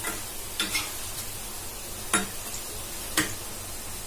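Pakoras frying in hot oil in a kadhai, with a steady sizzle. A metal spoon clinks against the pan four times as they are turned.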